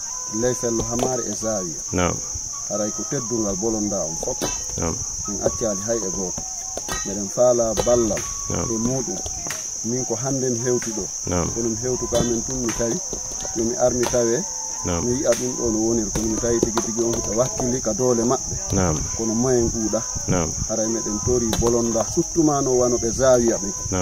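A steady, unbroken high-pitched chorus of insects trilling, with a man talking over it almost without pause.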